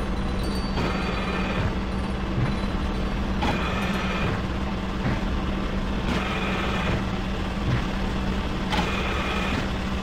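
A dark, noisy instrumental backing track with no vocals. It has a steady low hum underneath and a grinding, machine-like texture, and a brighter swell comes back about every two and a half seconds.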